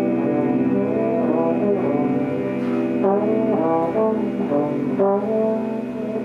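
Slide trombone playing a melodic line over sustained band chords in a live jazz group. About halfway through it moves into a run of short notes with slides between them.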